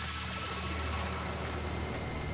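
A steady, low engine hum running evenly.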